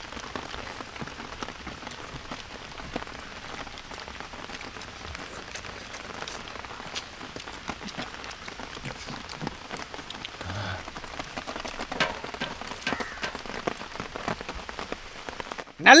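Steady rain falling: an even hiss with scattered ticks of drops. A few faint voices come in briefly about two-thirds of the way through.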